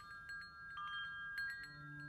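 Metal tube wind chimes struck by their wooden clapper, several strikes ringing on in overlapping bell-like tones. A low steady hum comes in near the end.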